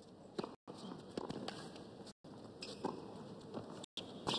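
Tennis serve and rally on a hard court: a string of sharp racket-on-ball strikes and ball bounces, about five in four seconds, over a low, steady crowd hush.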